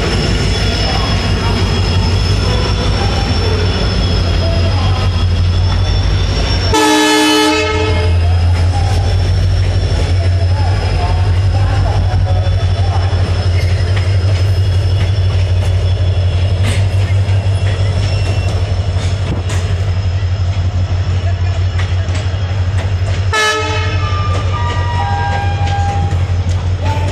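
Express passenger train passing close by: a steady heavy rumble with a faint high whine, and two train-horn blasts of about a second each, one about 7 seconds in and one near the end.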